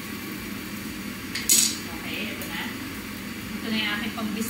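Metal kitchen utensils and a plate clinking as tongs and spatula are put down and the plate of fried fish is picked up, with one sharp clink about a second and a half in and a couple of lighter knocks around it.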